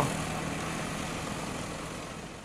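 Road traffic noise from motorcycles moving along a highway, a steady hum of engines and tyres that slowly fades.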